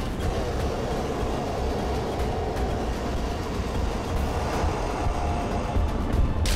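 Sci-fi sound effect of surging energy: a loud, steady, heavy rumbling roar.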